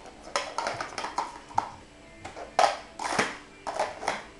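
Plastic sport-stacking cups clacking rapidly against each other and the tile floor as they are stacked up and brought down at speed, in a quick irregular run of sharp clicks.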